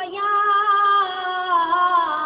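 A single high voice singing a naat, an Islamic devotional song, drawing out long held notes that bend slowly in pitch.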